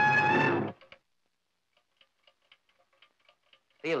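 A held orchestral chord with brass ends under a second in. After a short silence comes faint, quick, clock-like ticking from the cartoon atom bomb, which has just been switched on by its button.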